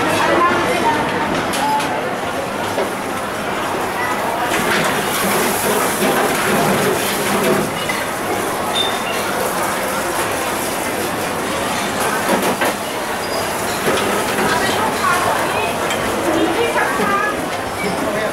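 Busy commercial kitchen din: a steady rushing noise with background voices, and a few sharp clinks of steel bowls and utensils.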